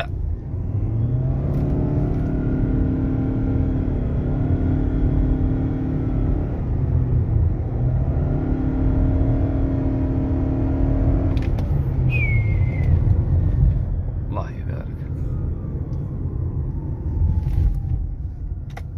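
Lexus NX 300h's 2.5-litre four-cylinder petrol engine droning under hard acceleration, heard inside the cabin: twice the revs climb briefly and then hold at one steady pitch while the car gathers speed, the way its hybrid CVT holds engine speed, over low road rumble.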